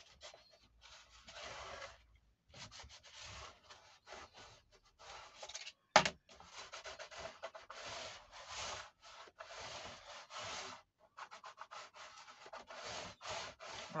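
A bone folder rubbed back and forth over kraft cardstock, burnishing the creases of folded, glued flaps: a run of dry rubbing strokes, one after another. About six seconds in there is one sharp knock, the loudest sound.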